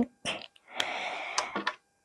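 Felt-tip marker rubbing across a paper tree cut-out as it is colored in, a steady scratchy hiss lasting about a second, with a few small clicks.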